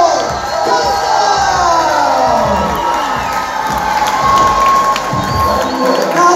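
Wrestling crowd cheering and shouting, many voices overlapping in rising and falling yells, with one long held cry in the second half.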